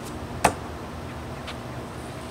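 A double-bit throwing axe with a shortened hickory handle strikes the wooden log target once with a single sharp thunk about half a second in, followed by a much fainter click about a second later.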